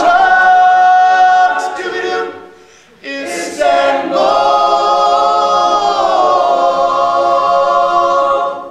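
Male a cappella group singing: a held chord fades out about two and a half seconds in, and after a short hiss the voices come back in with a long sustained final chord that slides slightly down in pitch about six seconds in.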